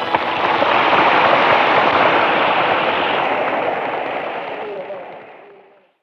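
Concert audience applauding right after a song ends, heard on an amateur audience tape; the applause fades away over the last couple of seconds and the recording drops to silence just before the end.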